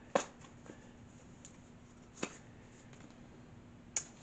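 Tarot cards being handled: two sharp clicks about two seconds apart and a few fainter ticks, over a faint steady hum.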